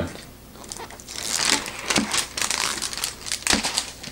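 Thin plastic film lid being peeled off a microwave meal tray: crinkling and crackling in an irregular run of rustles, starting about a second in and stopping just before the end.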